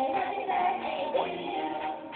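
Karaoke music playing, with a sung melody over the backing track.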